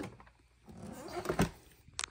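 Handling noise from an unpowered upright vacuum cleaner being stood back up, with a knock about three-quarters of the way through and a sharp click at the end.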